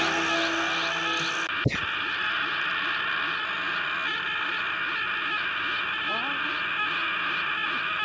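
A long, unbroken, distorted scream from an animated character powering up in a Dragon Ball–style rage, with a sharp crack about a second and a half in.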